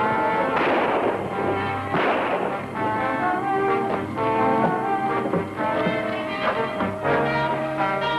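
Dramatic orchestral film score with brass, interrupted near the start by two short, loud bursts of noise about a second and a half apart.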